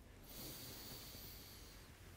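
A man taking one long, faint breath in as a recovery breath after a warm-up exercise. It starts about a quarter second in and fades near the end.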